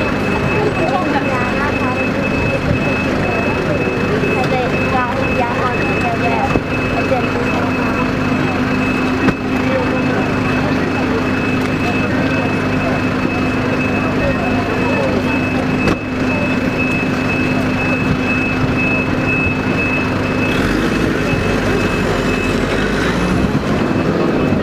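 A steady engine drone with a constant high-pitched tone running through it, under people talking.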